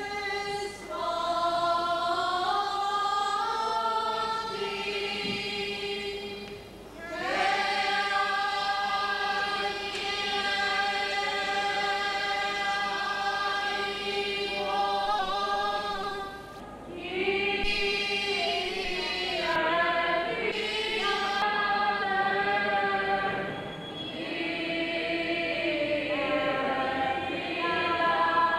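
Unaccompanied choir singing Byzantine liturgical chant in long held phrases, with short breaks between phrases about 7, 16 and 24 seconds in.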